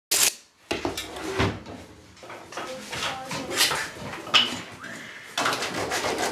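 A sharp click, then scattered knocks and clatters of objects being handled, with faint voices behind them.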